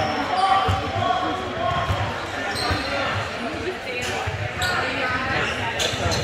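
A basketball bouncing on a hardwood gym floor in a series of thuds about every half second, with voices echoing through the large hall.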